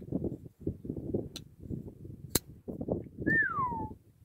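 Bestech Ascot liner-lock flipper knife being flicked open and shut, with two sharp clicks of the blade about a second apart, over a low rumble. Near the end, a single falling whistled note.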